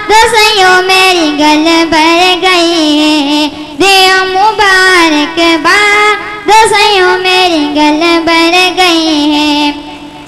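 A boy singing a naat (Islamic devotional song) into a handheld microphone, in long drawn-out phrases with held notes that glide and turn.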